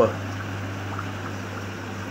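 A steady low hum with a faint even hiss over it, like a small motor running.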